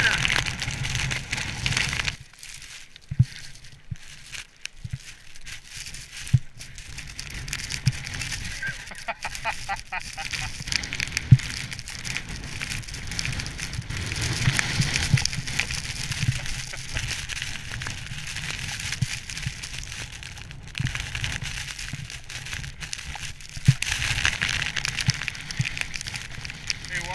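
Wind buffeting the microphone of a head-mounted action camera, a rough crackling rush with frequent brief dropouts, over skis sliding and scraping through wind-blown snow.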